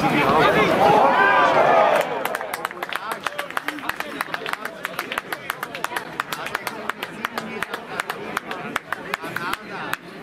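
Men shouting for about two seconds as a goal goes in, then scattered hand-clapping from a small crowd, several claps a second, for the rest of the time.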